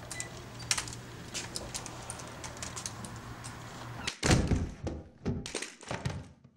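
Faint taps of aluminium crutches on a floor over a low room hum, then about four seconds in a run of loud, heavy thumps and knocks, three or four of them.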